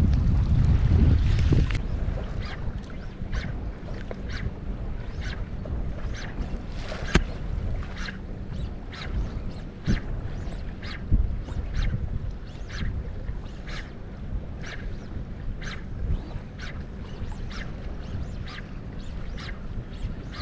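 Wind buffeting the microphone on a small boat under way on choppy lake water, heavy for the first two seconds and then easing, over a faint steady motor hum. Light ticks or taps recur about twice a second.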